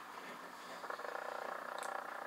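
Webster Lark record player's turntable motor running with the platter spinning, a steady hum, before the needle is set down. A faint tick near the end.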